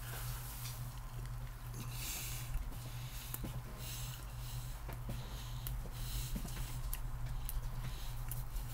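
Close-up chewing of a bite of sandwich: scattered small wet mouth clicks and smacks over a steady low hum.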